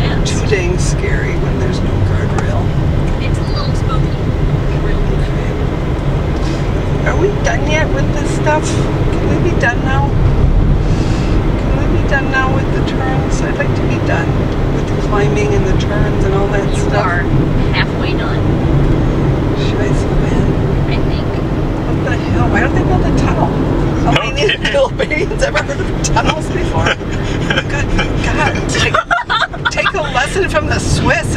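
Steady engine and road rumble heard from inside a car's cabin while it drives a winding mountain road, with voices talking low now and then.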